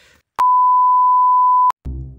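Edited-in bleep: a single loud, steady high beep tone lasting just over a second, starting and stopping abruptly. Music starts right at the end.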